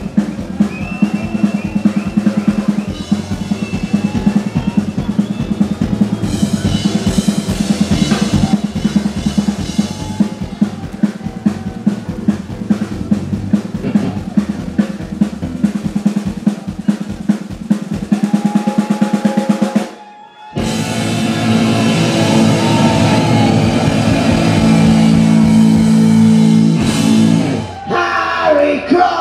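Punk rock band playing live on electric guitar, bass guitar and drum kit: an instrumental stretch with no singing, driven by a fast, even drum beat of about three hits a second. About twenty seconds in, the band stops dead for half a second, then comes back louder with long held guitar notes and no drum beat.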